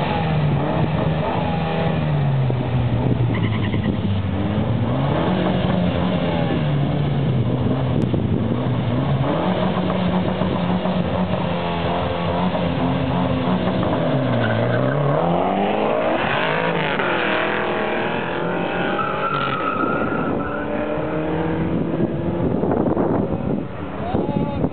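A Ford Mustang and a Mitsubishi Lancer Evolution revving at the drag-strip start line, the engine note rising and falling repeatedly as they hold revs. About fourteen seconds in, the revs dip and then climb sharply as the cars launch. They accelerate away through several gear changes, each a rising pitch broken by a shift, before the sound eases near the end.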